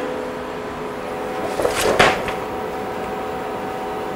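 Steady hum of the powered-up CNC knee mill, with several steady tones and a higher one joining about a second in. Brief paper rustle and knock about two seconds in as the manual is lifted off the mill table.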